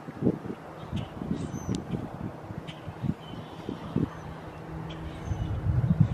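Footsteps and handling bumps from a handheld camera being carried outdoors, with a few short, faint bird chirps. About four and a half seconds in, a faint steady hum starts: a distant Sea-Doo personal watercraft engine on the lake.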